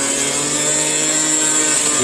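Niyama electric juicer motor running at a steady pitch while juice flows from its spout: a level hum with a high whine above it.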